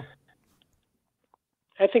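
Conversational speech from a man: a sentence trails off, about a second and a half of near silence follows, then talking starts again near the end.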